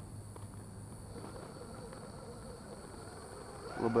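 Quiet, steady outdoor background of insects buzzing, with the faint hum of a small RC rock crawler's electric motor as the truck creeps and twists on a rock step.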